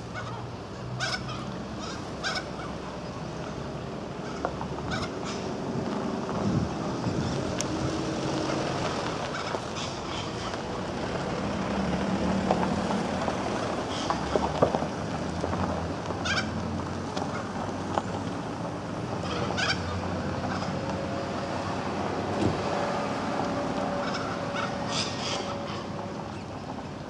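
Birds calling, with short calls scattered at irregular intervals over a steady outdoor background noise.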